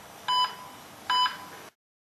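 Heart-monitor beep sound effect: a short electronic beep sounding twice at an even heartbeat pace, about a second apart, then cutting off suddenly near the end.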